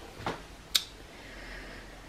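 Quiet room with a faint knock and then one short, sharp click about three quarters of a second in.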